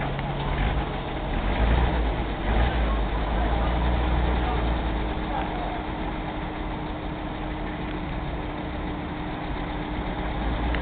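Engine of a WWII M3A1 scout car, a Hercules six-cylinder gasoline engine, running at low speed as the vehicle rolls slowly across the pavement. It gets a little quieter in the second half.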